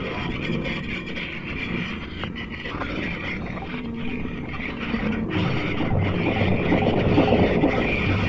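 Live experimental electronic noise played on hand-worked electronic instruments: a dense, grainy drone of low rumble and hiss with faint crackles. It grows louder in the second half.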